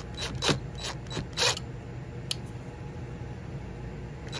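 Cordless driver run in a few short bursts, driving a screw through the end loop of a screen-door closer spring into the aluminium door frame.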